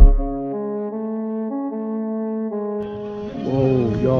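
Background music: a pounding beat stops and gives way to a slow melody of long held notes. Near the end the music cuts to open-air noise with voices.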